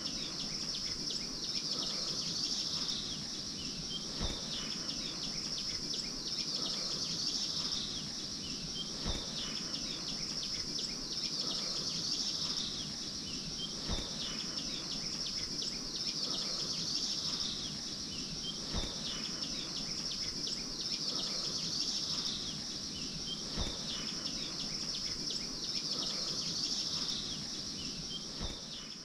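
A steady, high insect chorus that swells and eases about every five seconds, with occasional faint bird chirps. A soft low knock repeats at the same spacing, so the whole pattern recurs evenly.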